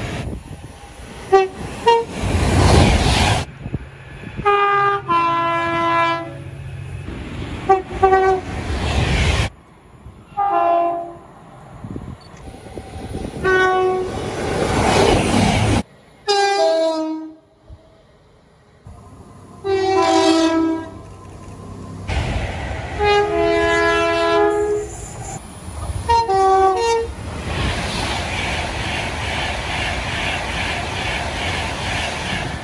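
Electric trains sounding two-tone horns in a string of separate clips: about ten horn calls, short toots and longer high-low blasts, some falling in pitch as the train goes by. Between them and over the last few seconds comes the loud rush of trains passing at speed, with an Avanti West Coast express going through near the end.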